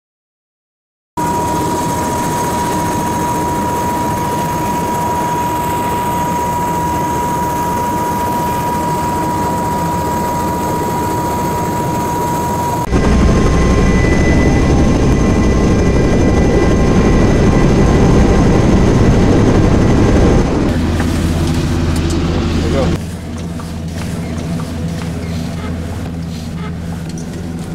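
Steady engine noise with a high whine, in several segments that change abruptly about 13, 21 and 23 seconds in; the last segment is quieter, with a low steady hum.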